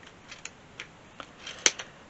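Small craft scissors snipping wool yarn to trim a pompom: a run of short, irregular snips, the loudest about a second and a half in.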